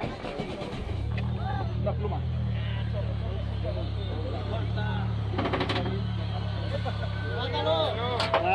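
A car engine starts about a second in and then idles steadily with a low, even hum.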